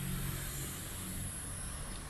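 Low steady background rumble with a faint hiss, easing a little about halfway through.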